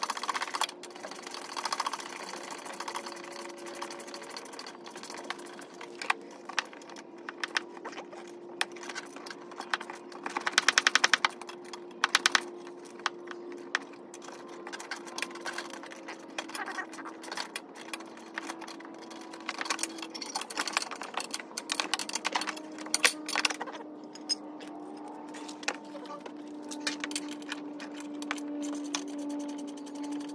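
Ratchet with a 10 mm socket clicking in short runs as bolts are backed out, with metal tools and small parts clinking; a fast, loud run of ratchet clicks comes about eleven seconds in. A faint steady drone sits underneath, slowly dropping in pitch.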